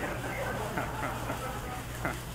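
Faint voices in a pause between lines, over the steady low hum and hiss of a 1930s radio broadcast recording.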